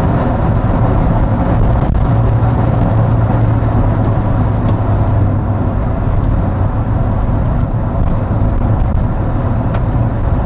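Car driving at road speed: a steady low engine drone over tyre and road noise.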